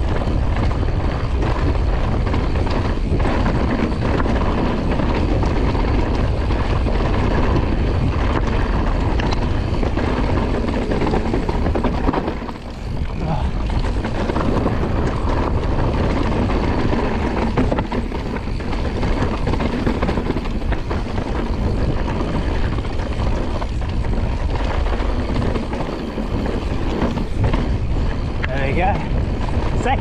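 Forbidden Dreadnought Mullet mountain bike descending a rocky dirt singletrack: tyres rolling over stones and the bike rattling, under heavy wind buffeting on the chest-mounted camera's microphone. The noise is steady and eases briefly about twelve seconds in.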